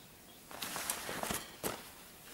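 Whole small-ruminant (sheep or goat) leather hides and their plastic wrapping being handled and pulled out of a cardboard box. From about half a second in there is rustling with several sharp clicks and knocks, the loudest near the end.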